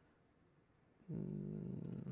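A man's drawn-out hesitation sound, a held 'uhh' or 'mmm' at a steady pitch, starting about a second in after a second of near silence.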